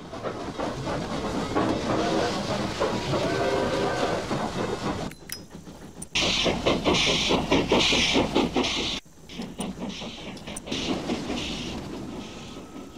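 A train running past a railway crossing: a rhythmic clatter with hissing. The hiss is loudest from about six to nine seconds in. The sound breaks off abruptly about five and nine seconds in.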